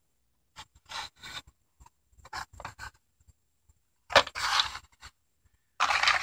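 Cardboard-and-plastic blister-pack cards handled and slid on a wooden table: a run of short scrapes and rustles, then a louder rustle about four seconds in.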